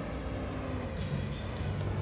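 Steady low rumble of street traffic, with a hiss that swells about a second in.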